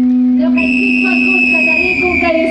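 A high, steady whistle-like tone that starts about half a second in and holds, sagging slightly in pitch, over a steady low hum and a wavering voice or music in the background.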